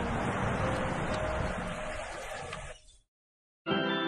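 A steady noisy background with a low rumble fades out about three seconds in, followed by a moment of total silence; then music with sustained, chiming notes begins just before the end.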